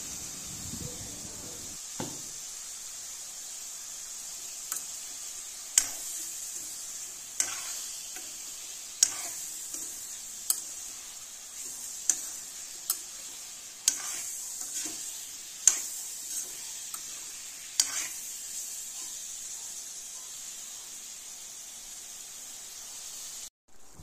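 Pork and vegetable pieces sizzling in an iron wok while a metal spoon stirs them, scraping and knocking against the pan every second or two. The knocks stop near the end, leaving the sizzle alone.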